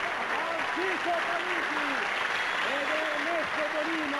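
Studio audience applauding steadily after a song, with voices calling out over the clapping.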